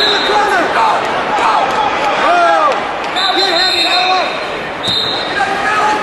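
Crowd and coaches shouting over one another in a large, echoing gymnasium during a wrestling bout. A whistle sounds for about a second midway and again briefly near the end.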